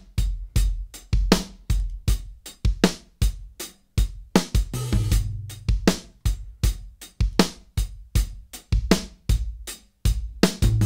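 A drum kit groove played back, with kick, snare and hi-hat in a steady rhythm of sharp hits. The dry close-miked kit is blended with the virtual room microphones of the Universal Audio Sound City Studios plugin, adding room ambience to the hits.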